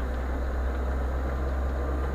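Lada 4x4 Urban 2131 (Niva) running steadily as it drives slowly over a grassy dirt track. The low, even rumble of engine and drivetrain is heard from inside the cabin.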